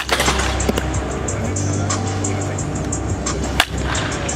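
Two sharp cracks of a baseball bat hitting pitched balls in batting practice, one at the very start and one about three and a half seconds in, over background music with a steady beat.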